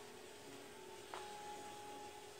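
Faint steady hum, with a soft click a little over a second in.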